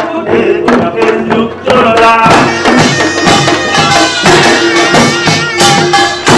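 Korean pungmul ensemble playing: janggu hourglass drums and buk barrel drums struck in a steady rhythm under a held, reedy melodic line.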